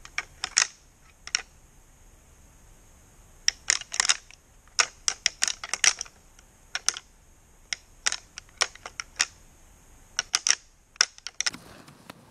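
An irregular series of sharp clicks and ticks, some singly and some in quick clusters, over a faint steady background.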